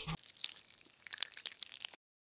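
A quiet scatter of sharp crackling clicks, like crunching or crumpling, that cuts off suddenly at the end.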